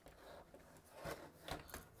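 Faint handling noise of a plastic gaming headset turned over in the hand: soft rubbing with a few light clicks about one and one and a half seconds in.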